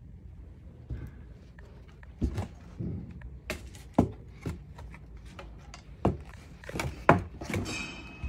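Plastic radiator fan shroud of a first-generation Mazda 3 being lifted, turned and set back on a wooden pallet: a string of irregular knocks and plastic clatters.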